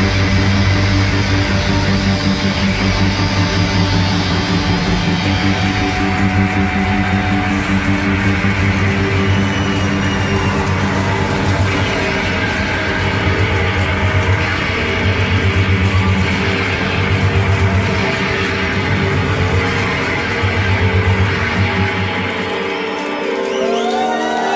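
A rock band playing live, electric guitar and bass to the fore, in a fan's audience recording. The bass drops out shortly before the end.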